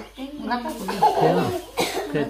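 Speech: women talking in Hmong, with a short cough near the end.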